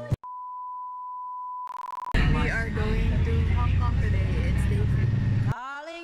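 A steady electronic beep tone held for about two seconds, cut off suddenly, then a voice over a loud low rumble. Music comes back in near the end.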